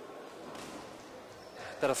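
Faint, steady sports-hall background noise with no distinct punches heard; a man's commentary voice starts near the end.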